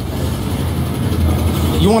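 A vehicle engine running with a low, steady rumble.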